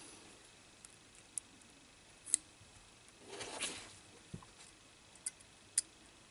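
Faint, scattered clicks and taps of a resistor's wire leads being handled and clipped into alligator-clip test leads, the sharpest click a little past two seconds in, with a soft rustle just past the middle.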